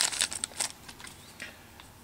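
Small clear plastic bag crinkling and crackling as it is opened by hand, loudest in the first half second, then a few faint crackles and ticks tapering off.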